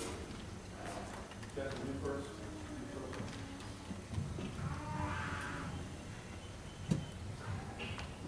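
Hushed pause before a jazz band starts: faint low voices murmuring in the hall, with small clicks and shuffles and one sharp knock about seven seconds in.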